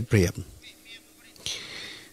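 A man's voice finishes a word, then a pause, and a short breathy hiss about one and a half seconds in.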